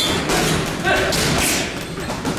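Boxing gloves landing on a heavy punching bag: a run of punches, each a dull thud.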